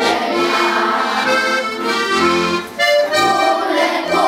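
Accordion playing a folk tune, an instrumental passage with little or no singing.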